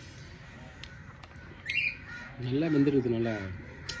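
A man's drawn-out, appreciative 'mmm' hum while chewing, rising and falling, starting about two and a half seconds in, with a crow cawing in the background.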